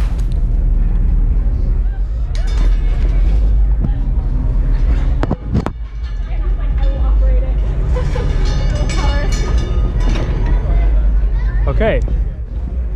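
Fairground background noise: a steady low rumble under distant, indistinct voices.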